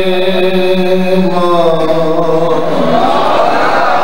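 A man's chanted recitation through a microphone, holding one long note that steps down in pitch about a second and a half in, then loosens into a less steady vocal line near the end.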